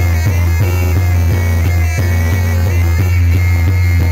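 Loud live Banyumas ebeg (kuda lumping) gamelan music: drums keep a steady beat over a heavy low boom, with a high, wavering melody line held on top.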